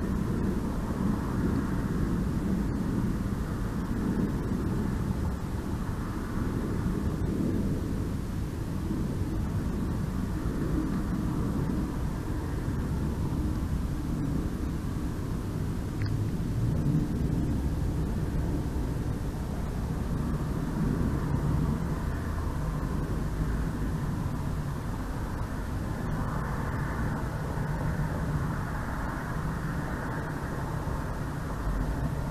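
Steady low outdoor background rumble with no birds calling, and one faint click about halfway through.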